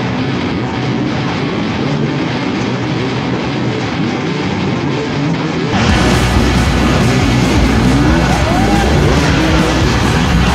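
Music over the din of off-road motorcycles at a race start. After a sudden change about six seconds in, a dirt bike's engine revs up and down a few times as it climbs over logs.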